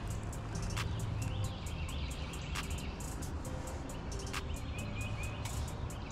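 Outdoor ambience: a low steady rumble with faint bird chirps and insect clicks, and a few sharp ticks.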